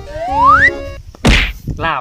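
Edited-in comedy sound effects: a rising whistle-like glide lasting about half a second, then one loud whack about a second later.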